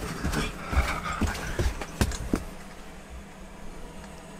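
Feet stamping on a campervan floor in an excited dance: a regular run of thuds about two or three a second, stopping about two and a half seconds in.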